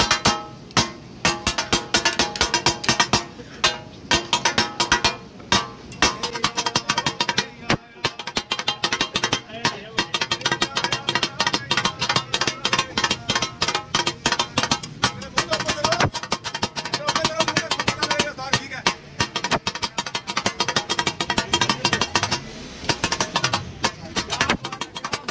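Two metal spatulas beating rapidly against a large flat griddle as minced mutton is chopped and fried on it: a fast, steady clattering rhythm with a few short pauses, over background music.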